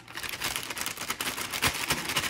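Plastic brownie-mix bag crinkling rapidly as it is shaken, with the dry mix spilling out into a glass mixing bowl.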